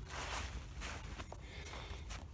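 Soft footsteps and rustling on grass.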